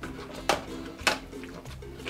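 Stainless steel potato masher knocking against the bottom of a stainless steel pot as it mashes cooked apples, with a sharp strike about half a second in and another about a second in, over background music.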